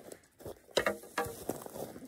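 Dry brush and twigs rustling and crackling as a hand reaches into a shrub and pulls out an elk shed antler, with two louder scraping knocks about three-quarters of a second and a second and a quarter in.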